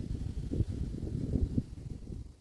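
Wind buffeting the microphone: an uneven, fluttering low rumble with nothing above it.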